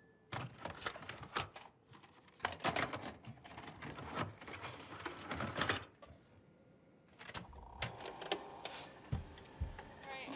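Clicks and clatter of a video cassette deck being handled, its buttons pressed in quick runs of sharp mechanical clicks, with a pause in the middle and a couple of low thuds near the end.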